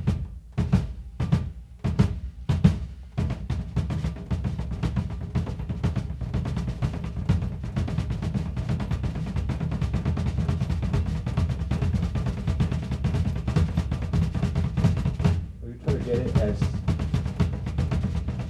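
Bass drum played with the heel-toe pedal technique: a few separate kicks, then from about three seconds in a fast, continuous run of kick-drum strokes that breaks off briefly near the end and starts again.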